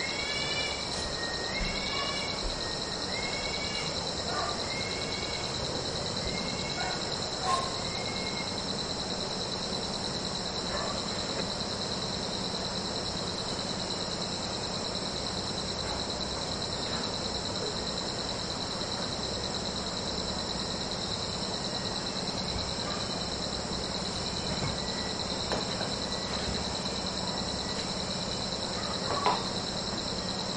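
Forest ambience of steady, high-pitched insect trilling. A bird gives a run of short rising-and-falling chirps, about one a second, that fade out after about eight seconds. A faint low hum runs underneath.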